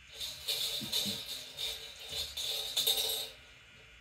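Numbered draw balls rattling and clattering inside a metal trophy cup as a hand stirs through them, a dense run of small clicks that stops shortly before the end.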